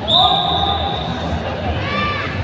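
A whistle blown once, a single steady high note lasting a little over a second, over crowd chatter.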